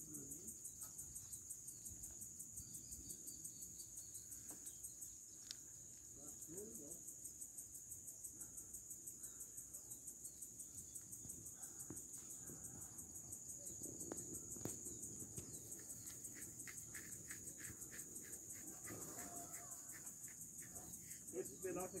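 Faint, steady, high-pitched insect trill made of very rapid, even pulses, the sound of a cricket-like singing insect.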